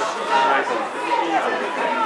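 Several voices talking over one another: spectators chattering near the pitch.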